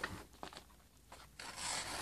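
A freshly sharpened knife blade slicing through a sheet of printer paper, heard as a soft papery hiss that starts about halfway through, after a near-quiet pause. The edge goes through cleanly, the sign of a razor-sharp blade.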